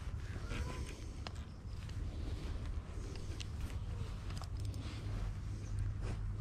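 Steady low rumble of wind and handling noise on the camera's microphone, with a few faint, sharp clicks spread through it.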